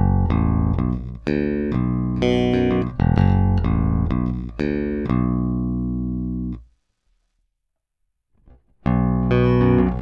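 Electric PJ bass strung with Ernie Ball Cobalt flatwound strings playing a riff, recorded direct. A long final note rings out and is cut off past the middle, there are about two seconds of silence, then the riff starts again near the end.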